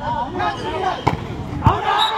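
A volleyball being played, two sharp smacks of the ball about half a second apart, the second one louder, over spectators' shouting and chatter.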